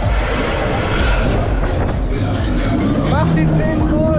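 Loud fairground ride in motion: music with heavy bass under a rushing noise as the gondolas spin. Voices call out over it from about three seconds in.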